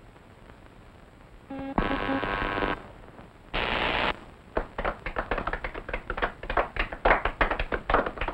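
Crowd clapping in wild applause, a dense rapid patter of claps that starts about halfway through and rises toward the end. It is set off by a short, loud pitched note and a brief burst of hiss.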